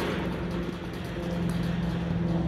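A steady mechanical hum from a running motor, with one low tone and a couple of fainter higher ones holding level.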